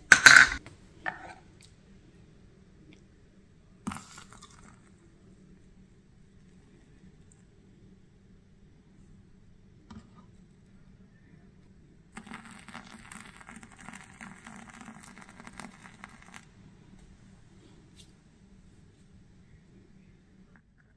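A sharp clatter of kitchen utensils at the start and a few light knocks. Then about four seconds of hot water being poured from a plastic measuring cup onto coffee grounds in the filter of an iced coffee maker.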